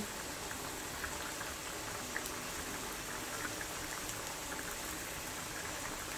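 Minced kefta, onion and spices cooking in oil in a steel pot on a gas stove: a soft, steady sizzle with scattered small crackles.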